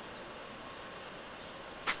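Quiet outdoor ambience: a steady faint hiss with a few faint, brief high peeps, then a voice starting just before the end.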